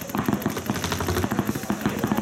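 Paintball markers firing in rapid strings: many sharp pops in quick succession, overlapping.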